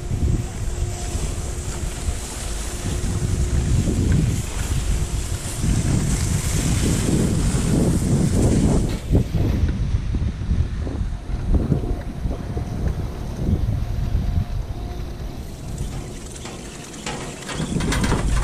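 Wind buffeting the microphone of a camera riding a chairlift chair, an uneven low rumble throughout. A faint steady hum comes and goes, and a few clicks sound near the end.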